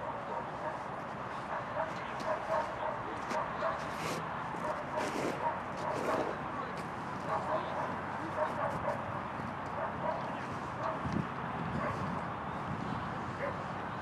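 A dog barking repeatedly, with indistinct voices.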